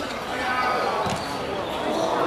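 A single dull thud of a football being kicked, about a second in, over voices calling out on and around the pitch.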